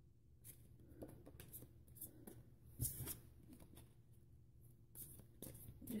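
Tarot cards being handled and shuffled by hand: faint, scattered rustles and soft taps, with one louder click about halfway through.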